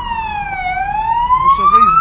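Emergency-vehicle siren wailing, its pitch sliding down and then back up in slow sweeps of about three and a half seconds each.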